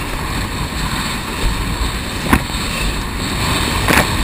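Steady rush of wind and water on a GoPro's microphone while kiteboarding across choppy sea, with two short sharp knocks, about two seconds in and near the end, as the board hits the chop.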